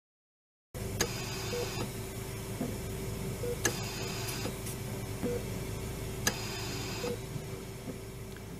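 Intensive care room sound from medical equipment, starting after a moment of silence: a steady hum and tone, soft short beeps about every two seconds, and a click followed by a brief hiss roughly every two and a half seconds, as a mechanical ventilator cycles breaths.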